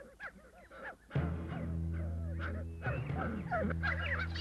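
Dingo pups give short, faint whimpers and squeals. About a second in, music with steady held low notes comes in, and more short high squeals sound over it.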